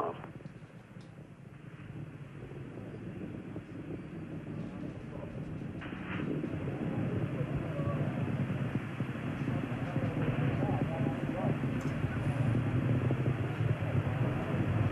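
Distant rumble of the Space Shuttle's rocket exhaust heard from the ground, low and noisy, growing steadily louder.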